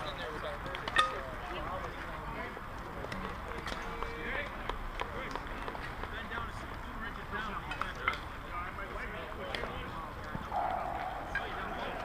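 Indistinct voices of softball players talking across the field, with a few short sharp knocks, the loudest about a second in.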